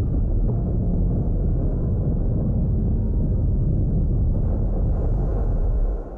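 Deep, steady rumbling from a film soundtrack as a huge tanker ship runs aground on a beach, stopping suddenly at the end.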